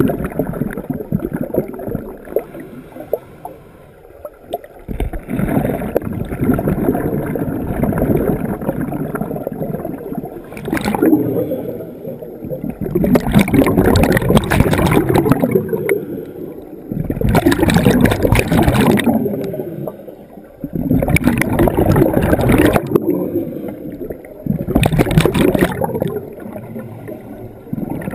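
Scuba exhaust bubbles gurgling in a pool, coming in surges about every four seconds over a steadier wash of water.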